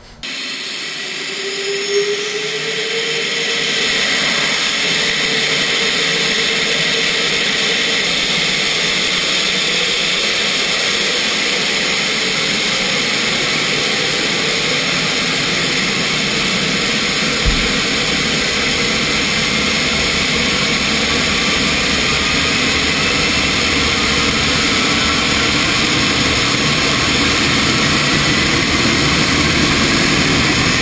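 General Electric J79 turbojet running on a test stand. A whine rises in pitch over the first few seconds as the noise builds, then holds as a steady, loud rush. There is a single low thump about seventeen seconds in.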